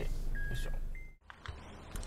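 Honda Odyssey's in-cabin reverse-gear warning beeping in two alternating pitches, about one pair a second, over the engine idling, as the minivan backs into a parking space. It cuts off suddenly about a second in, leaving faint outdoor quiet.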